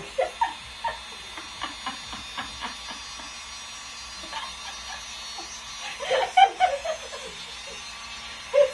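Two women laughing in short bursts, with a louder outburst of laughter about six seconds in, over the faint steady buzz of a mini hair dryer's small motor.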